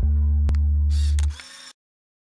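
Logo-sting sound design: a deep synth bass drone with a sharp click about a quarter of the way in. A short, bright, camera-shutter-like clatter follows past halfway, then the sound cuts off suddenly into silence.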